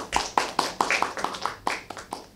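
A small audience of a few people applauding: a quick run of separate hand claps that tapers off near the end.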